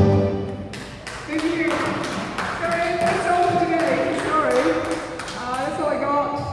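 Backing-track music fading out in the first second, then indistinct talking with a few sharp taps.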